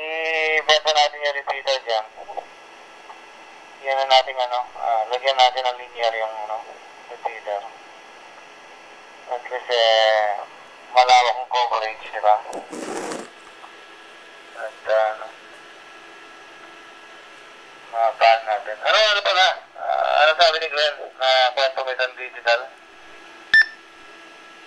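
A voice received over a handheld amateur radio transceiver's speaker in D-STAR digital voice mode, coming in several phrases with pauses between them, thin-sounding with no bass. A short burst of noise about 13 seconds in.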